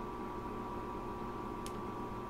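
Low, steady electrical hum and hiss of a desktop recording setup, with one faint computer mouse click about one and a half seconds in.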